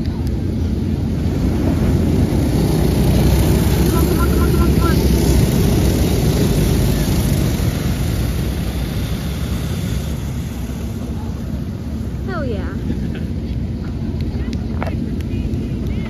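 Engines of a pack of dirt-track racing go-karts running hard around the oval, loudest a few seconds in as the karts pass close by, then easing as they move away around the track.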